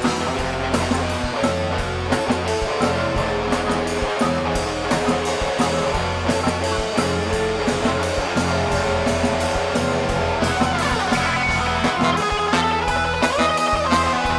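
Live funk band playing, with electric guitar and a drum kit keeping a steady beat over bass, keyboard and horns, and some sliding notes near the end.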